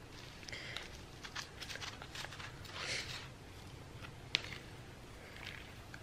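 Faint rattling and rustling of a seasoning shaker jar being shaken over a bowl of raw meat, with one sharp click a little after four seconds in.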